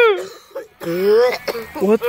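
A man's strained vocal sounds: a high drawn-out cry trailing off at the start, a short pause, then a short groan about a second in, as if winded after being slammed to the ground; a man starts to say "what" near the end.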